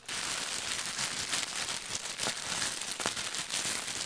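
Shiny green gift wrap crinkling and crackling as it is unwrapped and handled, a dense, steady stream of small crackles that trails off near the end.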